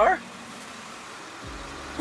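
Ford-chassis bus engine idling: a low, steady hum that comes in about three-quarters of the way through, after a faint steady hiss.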